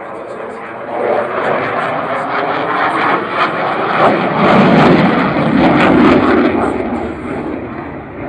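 Jet fighter flying overhead, its engine noise swelling to a peak about five seconds in and then fading as it passes.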